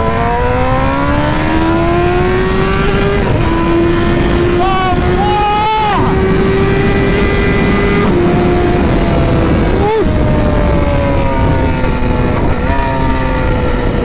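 BMW S1000 inline-four engine heard from the rider's seat under way. Its note rises steadily through the first three seconds as it accelerates, then holds fairly level with a few small drops in pitch and a short rev blip near ten seconds, over a steady rush of wind noise.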